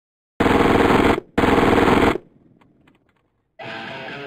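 Submachine gun fired fully automatic in two long bursts of rapid shots, each under a second, with a short pause between, followed by a few faint ticks.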